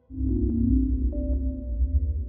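Ambient synthesizer music: a deep low drone with held tones above it comes in suddenly just after the start.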